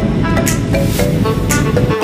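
Upbeat instrumental background music with a steady beat and sustained melodic notes.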